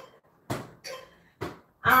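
A netball knocking against hands and legs as it is passed around the legs during a seated core exercise: three soft thuds about half a second apart.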